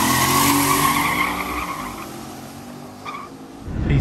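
A car engine running, with a squealing, tyre-squeal-like whine over it, fading away over about three seconds.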